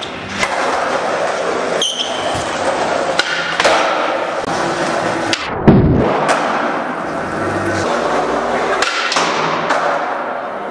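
Skateboard wheels rolling on a smooth concrete floor, broken by the sharp clacks of the board's pops and landings, with a heavy thud a little past halfway.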